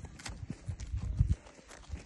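Steps on dry, stony ground: a run of irregular knocks and low thuds, loudest a little past a second in.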